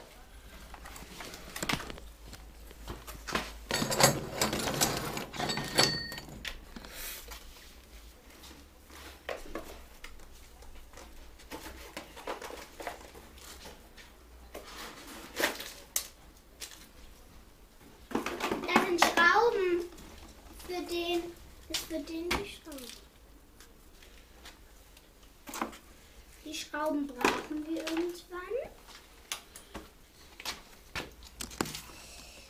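Clicks, knocks and rustles of a cardboard box and a bicycle lock being unpacked and handled. A child's voice comes in at intervals: about four seconds in, again from about eighteen to twenty-three seconds, and near the end.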